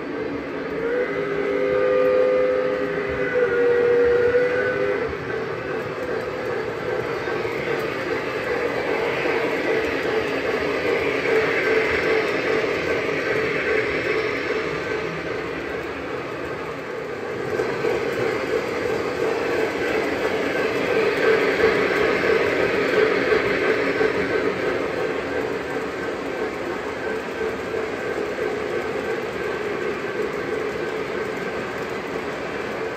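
Model freight train rolling past on layout track, with a continuous rolling rumble of wheels that swells twice as the cars pass. Near the start a steam-whistle sound from a model steam locomotive's sound system blows for about four seconds, shifting pitch partway through.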